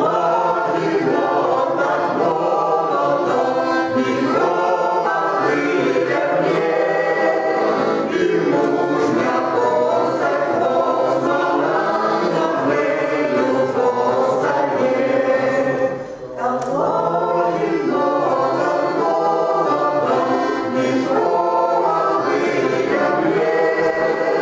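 Mixed choir of men's and women's voices singing a Ukrainian folk song, accompanied by an accordion. There is one short break between phrases about two-thirds of the way through.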